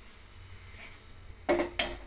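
Quiet kitchen room tone with a faint low hum, then a woman starts speaking about one and a half seconds in.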